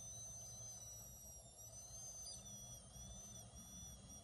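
A vape cartridge on a 510 battery, set to its middle voltage, being drawn on in one long steady inhale. It gives a faint, high, thin whistle that wavers slightly in pitch.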